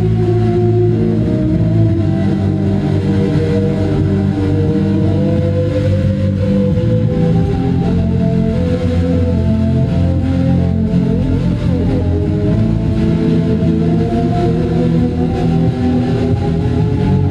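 Live band music: a loud, steady drone of bowed violin over electric guitar, with sustained notes that slowly shift in pitch above a heavy low end.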